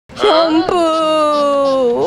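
A woman's voice drawing out one word in a long sing-song tone: a short, bending start, then one held note that slowly falls in pitch.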